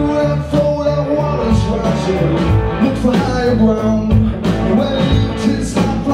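A rock band playing live: two electric guitars, electric bass and drums, with a lead vocal over them.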